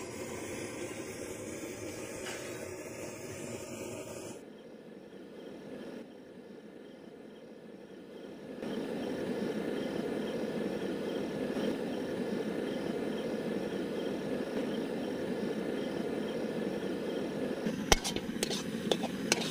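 Steady rushing roar of a cooking stove's burner under a wok. It turns quieter for a few seconds near the start, then comes back. A sharp metal click comes at the very end.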